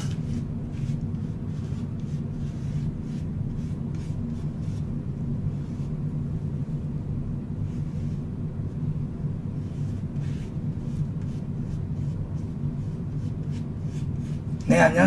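Fingertips rubbing BB cream into facial skin, giving soft, irregular swishing strokes over a steady low hum.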